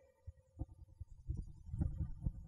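A lull in speech with several soft, low thumps picked up by a handheld microphone, growing a little louder in the second half.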